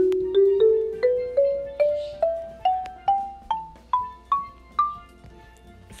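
Marimba sound from a phone app playing an ascending scale, one struck note at a time at about two or three notes a second. The scale climbs about two octaves and stops about a second before the end, the top of the app's range just covering the scale.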